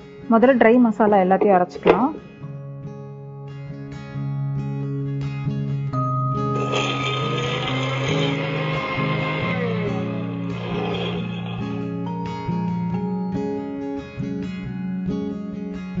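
Electric mixer grinder running for about six seconds, from roughly six seconds in, grinding whole spices into masala powder. Steady acoustic guitar background music plays throughout, and a voice speaks briefly at the start.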